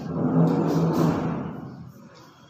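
A low, noisy sound with its energy mostly in the bass, fading away over the last half second.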